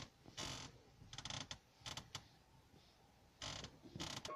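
A squeak in a Toyota car's cabin: about four short creaks a second or so apart. It is the complained-of squeak in the car, played back on request.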